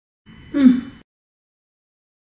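A woman's short, breathy vocal exclamation like a gasp, falling in pitch and lasting under a second, about a quarter second in.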